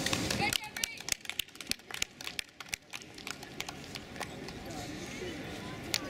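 A quick, irregular run of sharp clicks and taps from about half a second to three seconds in, then a quieter outdoor background with faint, distant voices and a few more scattered clicks.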